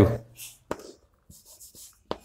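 Chalk writing on a chalkboard: short, separate scratches of the chalk, with a sharper tap about two-thirds of a second in.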